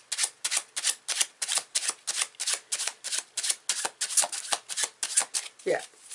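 A deck of cards being shuffled by hand: quick card-on-card taps in a steady run of about five a second.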